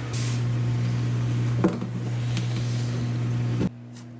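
Steady low hum of a small submersible aquarium pump running a drip-irrigation system, with an even hiss of water trickling through the wall and one light knock about one and a half seconds in. The hiss cuts off abruptly just before the end, leaving a fainter hum.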